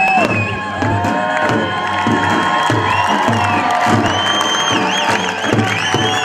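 Tunisian percussion ensemble playing a steady beat on bendir frame drums and a stick-beaten tbal bass drum. A crowd cheers over the music, with high wavering calls near the end.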